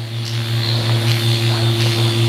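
MicroAire power-assisted liposuction handpiece running as the cannula is worked through abdominal fat: a steady, loud electric hum with a hiss above it.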